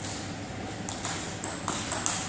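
Table tennis ball clicking off rackets and the table as a point starts with a serve and rally: about five sharp clicks, a few tenths of a second apart, from about a second in.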